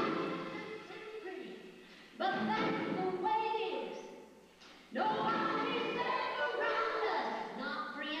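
Women's voices singing into microphones, amplified in a large hall. The sound dies away almost to a pause, then a sung line comes in sharply about two seconds in, and another just after the middle.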